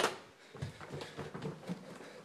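A sharp click at the start, then faint scattered soft knocks and rustling from a person moving about a small room with a phone in hand.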